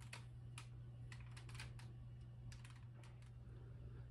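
Near silence: a few faint, irregular light clicks over a steady low hum.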